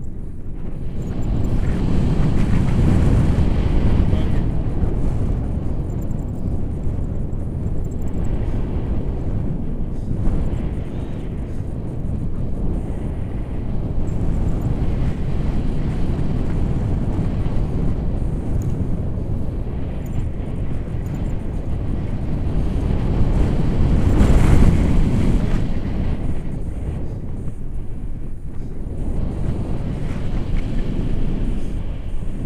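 Airflow buffeting an action camera's microphone during a tandem paraglider flight: a steady low rumble that swells in a stronger gust about 24 seconds in.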